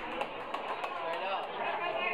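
Audience chatter: several voices talking at once, fairly quiet, with no music playing.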